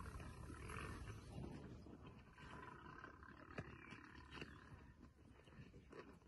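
Faint growls from lionesses feeding on a warthog kill, with scattered short snaps and clicks of chewing and tearing.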